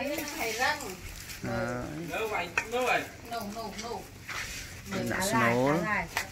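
Women talking, with a few light clinks of a metal spoon scooping soaked sticky rice from an aluminium basin.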